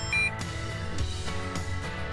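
A short, high electronic beep from a Bosch spexor mobile alarm unit just after the start, as a button on it is pressed, over steady background music.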